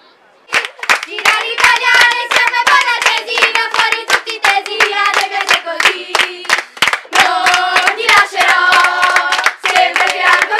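Girls' softball team singing a dugout cheer together while clapping their hands in time, starting suddenly about half a second in.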